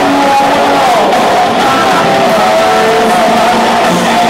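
Heavy metal band playing live in an arena: loud electric guitars and drums, heard from far back in the stands with the hall's echo.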